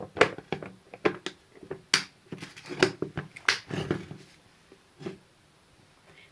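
Plastic Milton lunch box being closed: a quick run of sharp clicks and knocks as the lid is pressed down and its latches snap shut. It dies down after about four seconds, with one more click a second later.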